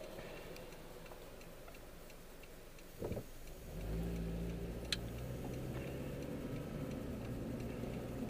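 Car engine heard from inside the cabin, quiet at first, then picking up under acceleration about four seconds in and running steadily on. A thump just after three seconds and a single sharp click a little later.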